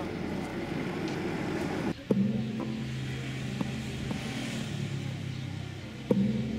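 Voices at a market stall for about two seconds, cut off abruptly by a steady low hum with a few faint clicks.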